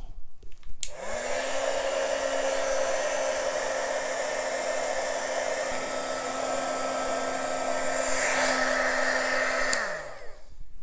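Handheld embossing heat gun switched on with a click about a second in: its fan motor spins up quickly to a steady hum over a loud rush of blown air. It is switched off just before the end, the hum falling away.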